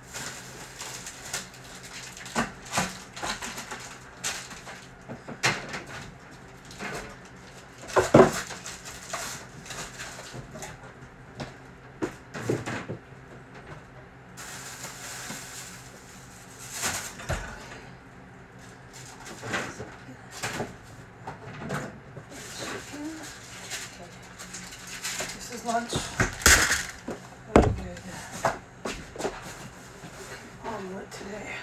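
Irregular knocks and clatter of things being handled and set down on a wooden kitchen counter, with one loud knock about eight seconds in and a run of knocks near the end, over a steady low hum.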